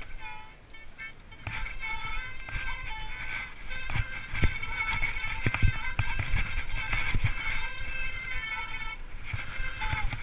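Mountain bike disc brakes squealing on and off in the wet, with knocks and rattles from the bike over rough ground, heaviest from about four seconds in.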